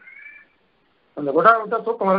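A brief, faint high-pitched tone at the very start, then a pause, then a man's lecturing voice resuming a little over a second in.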